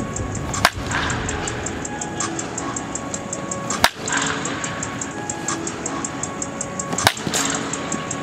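Baseball bat hitting pitched balls in batting practice: three sharp cracks about three seconds apart, each with a short echo, over background music.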